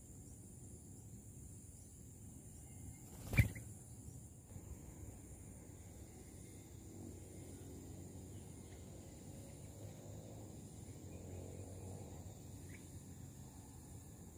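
Faint outdoor ambience with a steady high insect drone over a low rumble, broken by one sharp knock about three and a half seconds in. A faint short chirp comes near the end.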